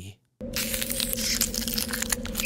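Ice-cracking sound effect: crackling and crunching over a steady low hum, starting suddenly about half a second in after a brief silence.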